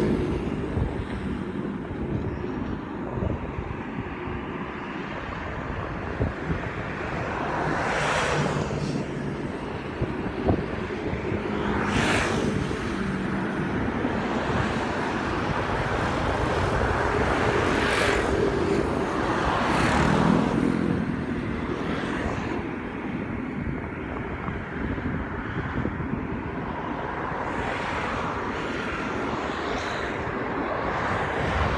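Steady wind and road noise while moving along the edge of a road, with several vehicles passing, each swelling up and fading away. A short knock comes about a third of the way in.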